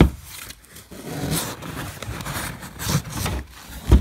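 Cardboard shipping box being handled and opened, its flaps scraping and rubbing. There is a sharp knock at the start and another near the end.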